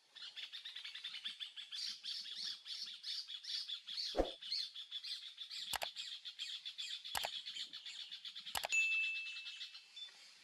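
Birdsong of rapid, repeated high chirps, about four or five a second, with four sharp mouse-click sounds spaced a second or so apart and a short ringing ding near the end, typical of an animated subscribe-button overlay.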